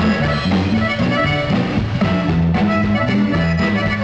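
Live band music with no singing, led by accordion over acoustic guitar, electric bass and drums, with a steady dance beat.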